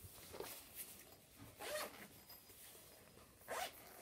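Pencil scratching across sketchbook paper in a few short strokes, a zip-like rasp each time.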